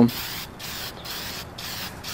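Aerosol spray-paint can spraying a coat of paint: a steady hiss, broken by two brief pauses about half a second and a second and a half in.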